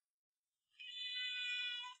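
A cat meowing once: a single steady meow about a second long, starting a little before the middle.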